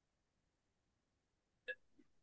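Near silence on the video-call audio, broken by a single very short blip near the end.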